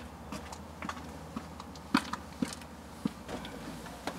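Irregular light clicks and taps, the sharpest about two seconds in, over a steady low hum.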